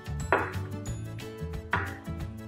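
Background music, with two sharp clinks about a second and a half apart as a drinking glass of oil and coloured water is set down on a flashlight.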